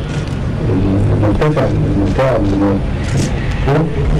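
A man speaking through a microphone over a public-address system, with a steady low rumble underneath.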